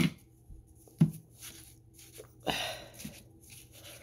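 Quiet, scattered handling sounds as a baking-soda-and-conditioner mixture is scooped and pushed into a balloon: a sharp click at the start, a duller knock about a second in, and a brief rustle about halfway through.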